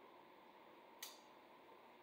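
Near silence: room tone, with one brief click about a second in.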